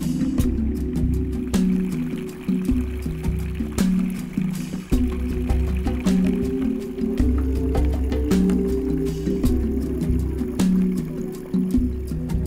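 Background music with a steady beat over a sustained bass line.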